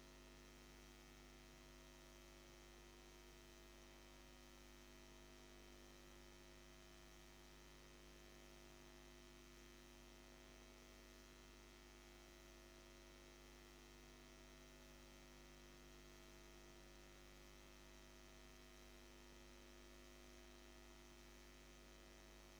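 Near silence: a steady electrical mains hum with faint hiss, unchanging throughout.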